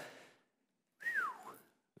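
A man's short whistle, a single note sliding downward, about a second in.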